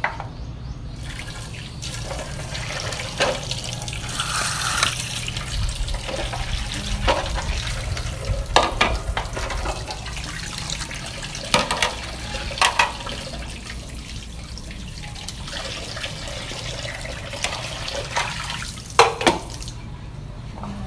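Dishes being washed by hand at a sink: water running and splashing, with plates knocking against the counter or each other several times.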